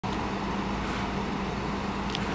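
Steady low rumble with a constant low hum, unchanging throughout.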